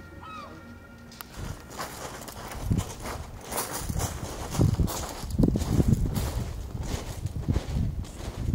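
Footsteps crunching on loose pebble shingle at a walking pace, starting about a second and a half in.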